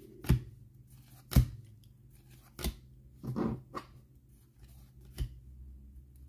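Glossy trading cards from a freshly opened pack flicked through by hand one at a time, each card edge giving a sharp snap, roughly one a second, with a short rustle of card on card a little past the middle.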